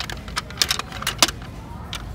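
Small glass nail polish bottles clinking against each other and the plastic display tray as a hand picks them up: a quick run of sharp clicks, the loudest about a second and a quarter in.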